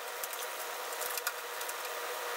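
Scattered small, light clicks and taps of handling as a plastic-tubed submersible LED light bar is fitted at the rim of an aquarium, over a steady faint hiss.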